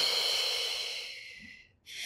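A long, audible out-breath through the mouth, a hissing breath that fades away over about a second and a half.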